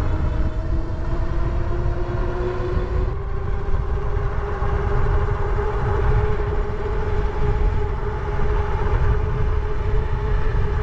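Electric motor of a Megawheels EB01 fat-tire e-bike whining under full throttle. Its pitch rises for about the first three seconds as the bike accelerates, then holds steady at top speed. Heavy wind rumble on the microphone runs underneath.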